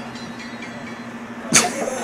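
A faint steady background hiss with a low hum, then a sudden burst of laughter about a second and a half in.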